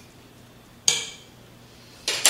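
A metal fork clinks once against the pot: a single sharp strike with a brief ring about a second in.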